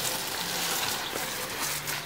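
Steady hiss of water spraying from a garden hose onto plants and leaves.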